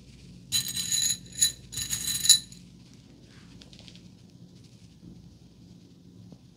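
Metal bobby pins jingling and clinking against one another in three quick bursts over about two seconds, with a high metallic ringing; soft hair rustling follows.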